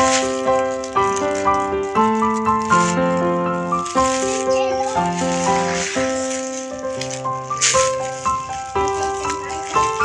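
Background music, a bright instrumental tune of quick, even notes, over the crinkling rustle of plastic packaging being handled and unwrapped, loudest a little over halfway through.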